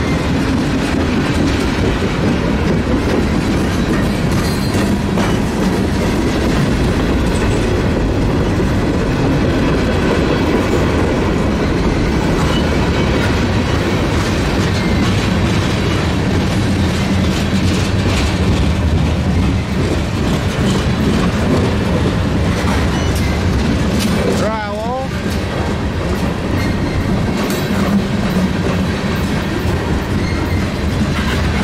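Freight cars of a CSX mixed train (autoracks, tank cars and lumber-loaded flatcars) rolling steadily past on the climb, with a continuous rumble of steel wheels on rail and clickety-clack over the joints. A brief wavering tone cuts in about 25 seconds in.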